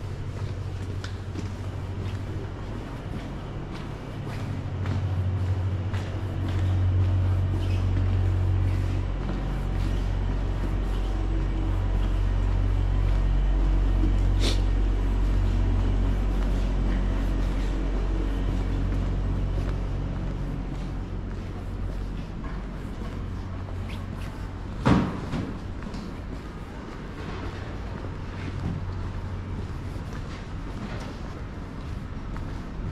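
Low rumble of a vehicle engine on a city street, swelling over several seconds and fading away, with one sharp knock near the end.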